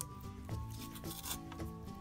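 Soft background music with sustained, steady notes, and faint brief crackles of dried floral moss being pressed onto foam by hand.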